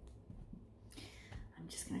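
A woman whispering softly under her breath in a quiet pause, then starting to speak just at the end.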